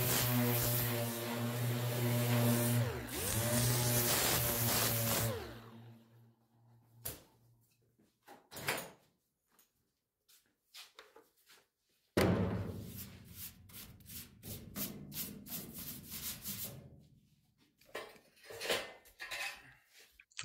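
An 8-inch orbital sander with a 36-grit disc runs against bare sheet-metal at the door edge, its pitch dipping twice as it is pressed in, then winds down and stops about five or six seconds in. After a pause with a few light clicks, a softer irregular rubbing and handling noise follows for several seconds.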